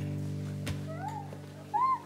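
An infant cooing: two short rising-and-falling coos, the second louder near the end, over a held music chord that fades away.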